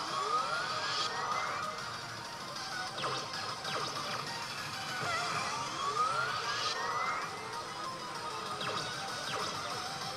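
Pachislot machine's bonus-round music and sound effects, with two long rising sweeps, one near the start and another about five seconds in, and a few sharp hits.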